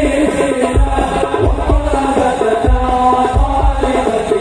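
Sholawat, Islamic devotional chanting sung by a group over amplified music, with deep drum strokes about every two-thirds of a second.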